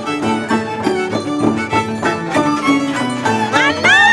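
Andean harp and violin playing a toril, the harp's plucked notes under the violin's melody. Near the end a woman's high singing voice comes in on a rising slide.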